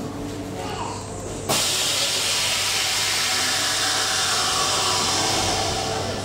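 A loud, steady hiss starts suddenly about a second and a half in and holds for about four seconds before easing off near the end.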